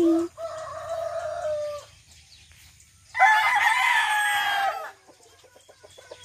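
Roosters crowing: one crow runs through the first couple of seconds, then a second, louder crow starts about three seconds in and lasts about a second and a half.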